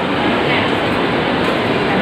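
Steady, loud background din of a busy indoor shop, with indistinct voices mixed into a constant noise and no single distinct event.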